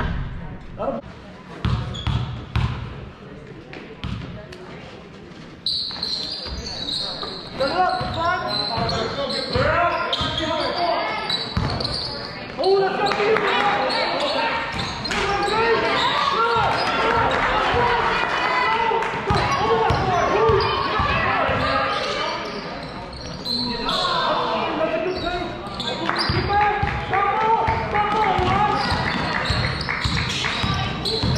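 A basketball bounces with low thuds on a gymnasium's hardwood floor. From about six seconds in, many voices of spectators and players shout and call out across the hall, over continued bouncing.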